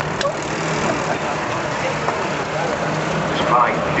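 A 750 cc Russian-built Ural sidecar motorcycle's flat-twin engine running steadily, with the murmur of a crowd and faint voices.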